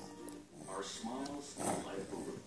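Baby making short, soft vocal sounds with a mouthful of mashed potato, over faint background music.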